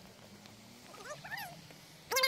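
Faint, distant calls of wild ducks on the river: a few short calls that rise and fall, about a second in.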